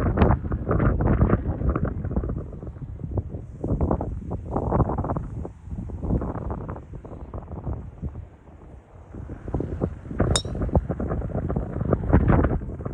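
Wind buffeting the microphone, and about ten seconds in a single sharp metallic click: a driver striking a golf ball off the tee.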